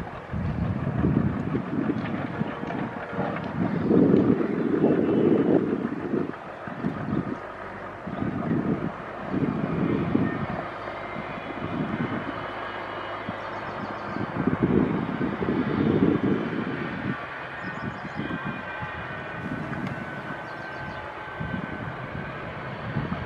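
Indian Railways WDP4D diesel locomotive's two-stroke EMD engine running as it hauls an express train slowly toward the microphone. Wind buffets the microphone in irregular low gusts.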